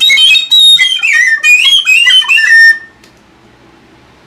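Red Clarke Sweetone conical tin whistle played in a quick run of high, shrill notes, falling overall and stopping about three seconds in. It sounds like a bird call, the squeal this very low-breath whistle gives when blown too hard.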